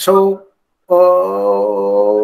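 A man's voice intoning Sanskrit in a chanting manner: a short syllable, a brief pause, then about a second in one long held note.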